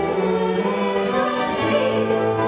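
A soprano singing held notes with an orchestra of strings accompanying her; the low bass line moves to a new note about one and a half seconds in.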